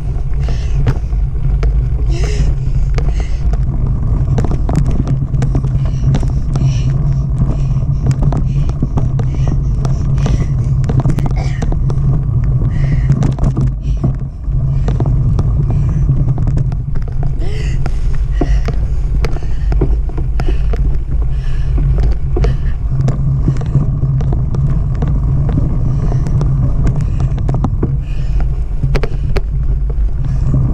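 Mountain bike riding over a leaf-covered dirt trail, heard from a camera mounted on the bike: a constant low rumble with many small clicks and rattles from the tyres and the bike over the ground.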